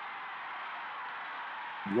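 Steady hiss of an old archival radio broadcast recording, with a faint thin whine running through it. A man's voice starts right at the end.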